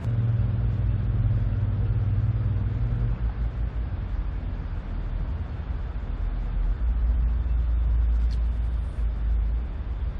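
A steady low engine rumble. It is deeper after about three seconds and strongest near the end.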